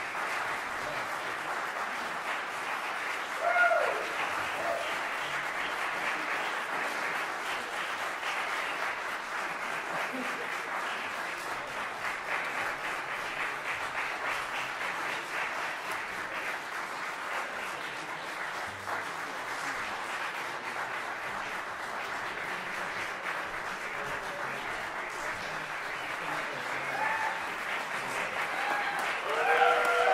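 Audience applauding steadily, with a brief cheer about three and a half seconds in and voices rising near the end.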